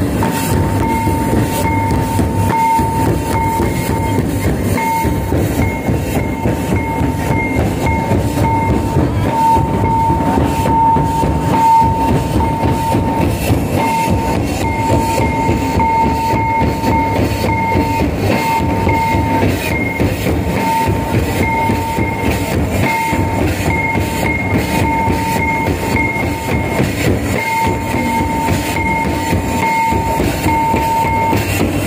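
Loud live music for a Santali line dance: dense drumming with a steady high-pitched tone held over it that breaks off briefly every so often.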